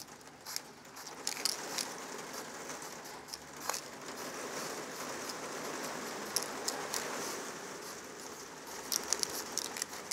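Aerosol spray paint can fitted with a needle cap, hissing as thin lines are sprayed. It comes in short spurts with light clicks at first, then a longer, steadier spray through the middle, then spurts and clicks again near the end.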